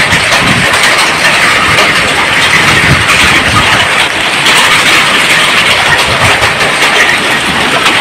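Heavy hail falling: a dense, steady clatter of many hailstones hitting hard ground and roof surfaces.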